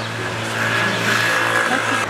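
A motor vehicle running close by on the street: a steady low engine hum with road noise that grows louder through the middle.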